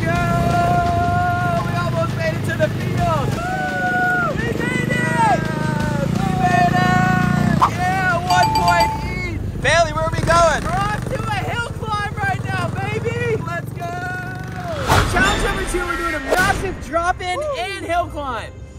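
Excited voices calling out over background music, with a small vehicle running underneath in the first half.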